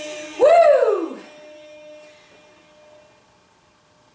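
A woman's single loud "whoo" cheer about half a second in, rising briefly and then falling in pitch, just after the dance music stops.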